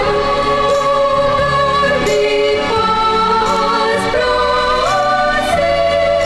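Recorded Christian choral song: a choir singing long held notes that step up and down in pitch, over a steady low accompaniment.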